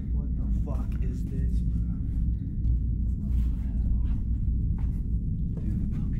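Steady low rumble of handling and movement noise on a handheld camera's microphone, with faint mumbled voices about a second in.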